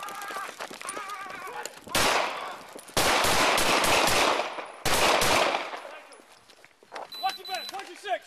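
Gunfire in rapid volleys: loud bursts of shots in quick succession about two, three and five seconds in, picked up by a police body camera.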